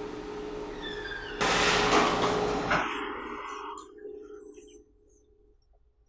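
Fingers rubbing through hair and over the scalp during a head massage, a close scratchy rustle that grows loud about a second and a half in and then fades out, leaving near quiet with small clicks. A faint steady hum runs underneath.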